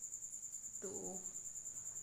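Steady, high-pitched insect trill with a rapid, even pulse.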